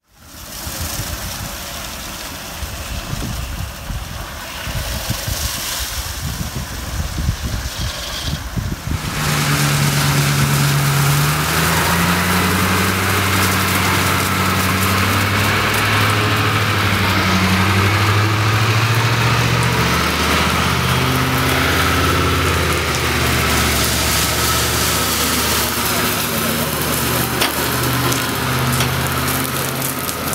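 Bitimec single-brush wash machine running, with a steady low hum and the wash of its rotating brush and water spray against the side of an RV, from about nine seconds in. Before that, a noisier mixed background with voices.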